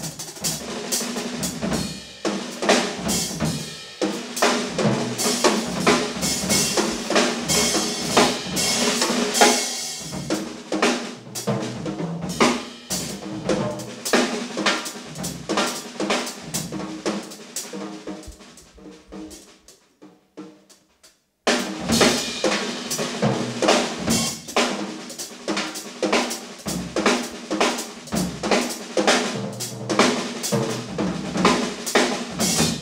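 A live jazz ensemble playing, with a drum kit to the fore in busy drum and cymbal strokes over held pitched notes from the band. About two-thirds of the way through the music fades away to near silence, then cuts back in suddenly at full level.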